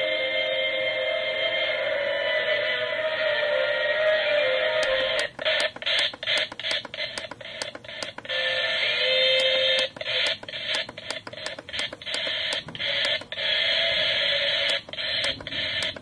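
Lalaloopsy toy alarm clock radio's small speaker playing an FM classical music station, garbled with static and distortion. From about five seconds in the sound keeps cutting out in brief gaps.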